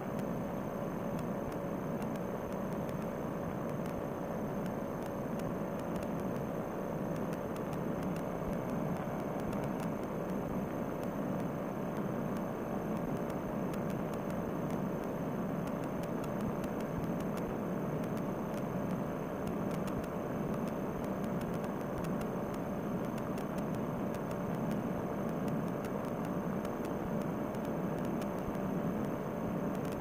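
Fresh Breeze Monster paramotor engine and propeller running steadily in cruise flight, a muffled, unchanging drone.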